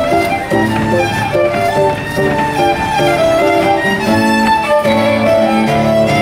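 Fiddle and guitar duo playing a Breton fest noz dance tune: a continuous run of short fiddle notes over the guitar accompaniment.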